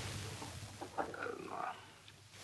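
A faint, hesitant "uh" from a voice about a second in, over a low steady hum.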